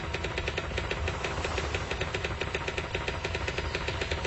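Typewriter keys clacking in a fast, even run, about eight strikes a second, over a low rumble.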